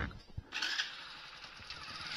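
Motorcycle moving off. A short louder sound about half a second in is followed by a steady mechanical running noise.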